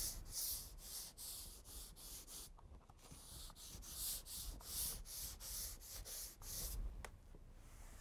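Faint back-and-forth strokes of a sanding block with 220-grit paper on a hardwood floor, scuffing a dried coat of water-based polyurethane so the next coat has something to bite to. The strokes come at about two a second, break off briefly about two and a half seconds in, and die away near the end with a single click.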